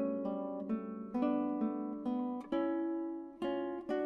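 Nylon-string classical guitar played fingerstyle: a melodic line of single plucked notes, about two a second, each ringing and dying away.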